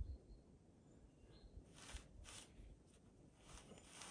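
Near silence: faint woodland ambience with one faint bird chirp about a second in and a few soft, brief hisses.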